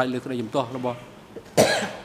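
Speech, then a single cough about one and a half seconds in, the loudest sound here.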